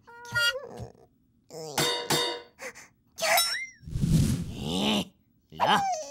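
Cartoon characters making short, wordless squeaky cries that swoop up and down in pitch, with a noisy burst lasting about a second, about four seconds in.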